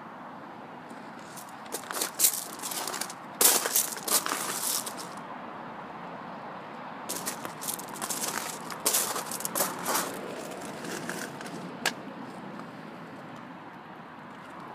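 Footsteps crunching on loose gravel, in two spells with a pause between, and a single sharp click near the end.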